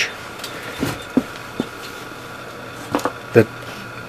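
A few faint, short clicks from test-probe leads being picked up and handled, over a faint steady background hum.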